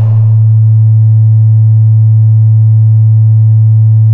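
A single loud, low sine-wave tone held perfectly steady, with no change in pitch or level.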